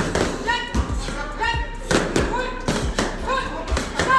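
Boxing gloves and foam pool noodles striking each other in quick, irregular thuds, several a second, during a pad-style sparring drill.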